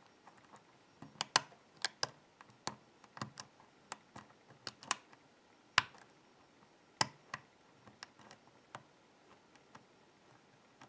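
Small metal clicks and taps from a hook pick working the pins inside a BKS euro-cylinder lock held under tension, coming irregularly after a quiet first second, with a few sharper clicks standing out.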